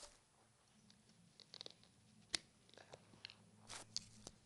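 Faint handling of a USB cable being unplugged from an iPod mini: a few scattered small clicks and short rustles, with one sharp click a little past two seconds in.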